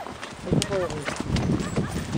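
Horse's hooves clip-clopping on a dirt trail at a walk, with a rider's body and the horse moving under the camera.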